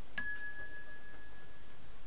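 A single bright ding, a small bell-like chime struck once, ringing on one clear tone for about a second and a half.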